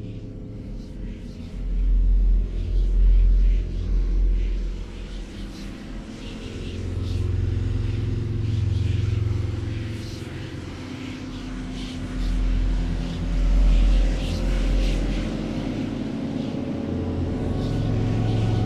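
Dark ambient music: deep rumbling drones that swell and fade in slow waves every few seconds, over a faint bed of crackle and hiss.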